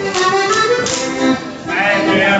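Accordion playing a Styrian Landler dance tune, with regular sharp taps from the dancers on the beat. Near the end the music drops briefly and voices start singing.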